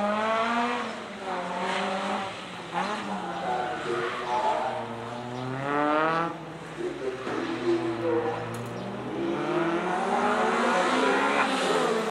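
Mitsubishi Mirage CJ4A gymkhana car's four-cylinder engine revving hard up and down as it is driven around the course, heard at a distance from trackside. The pitch climbs steeply about four to six seconds in, drops, then climbs again near the end.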